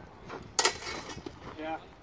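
A single sharp metallic clash of sparring swords about half a second in, ringing briefly; a voice says "yeah" near the end.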